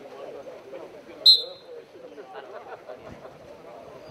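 A single short, sharp whistle blast about a second in, the referee's whistle at a lucha canaria bout, over a steady murmur of crowd chatter.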